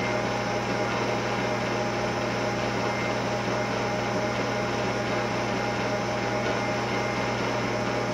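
Canine underwater treadmill running: a steady machine hum from its motor and pump, with a constant wash of water noise over it.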